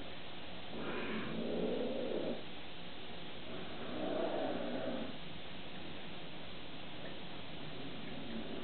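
Bengal cat growling: two low, drawn-out growls of about a second and a half each, the first about a second in and the second about three and a half seconds in.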